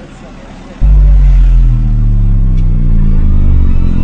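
A loud, deep droning hum cuts in suddenly about a second in and holds steady, its pitch sinking slowly.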